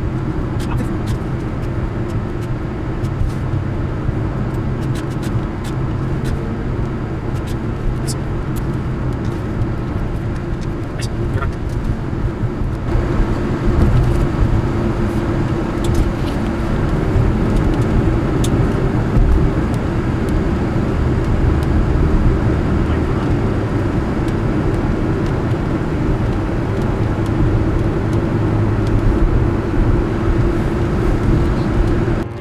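Steady road and engine noise of a car driving at highway speed, heard from inside the cabin, growing a little louder about thirteen seconds in.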